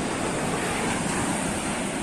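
Ocean surf washing onto a sandy beach, a steady even rush of waves, with some wind on the microphone.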